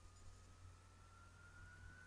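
Near silence: faint room tone with a low hum and a faint thin whine that rises slowly in pitch.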